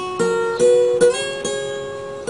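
Steel-string acoustic guitar, capoed, playing an instrumental passage of plucked notes and chords, a new one about every half second, each left ringing.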